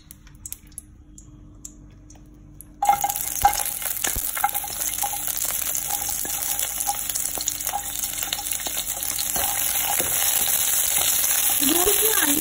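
Hot oil in a nonstick wok, quiet apart from a few faint clicks, then about three seconds in chopped onions and corn kernels drop into it and start sizzling loudly. The frying sizzle keeps on, growing a little louder toward the end, with occasional clicks.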